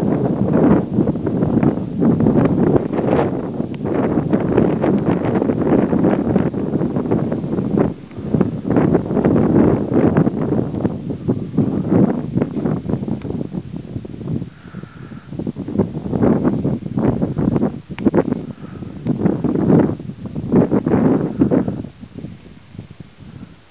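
Strong, gusty wind buffeting the microphone on an exposed hilltop, a loud low rumble that surges and eases in gusts.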